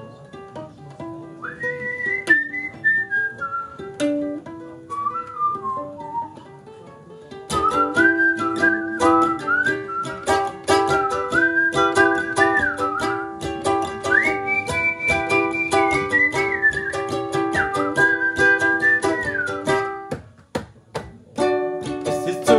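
Ukulele introduction with a whistled melody over it. The ukulele is played lightly at first and turns to steady rhythmic strumming about seven seconds in. Both break off briefly near the end.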